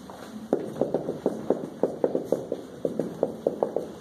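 A quick, uneven run of light taps, about six a second, beginning about half a second in.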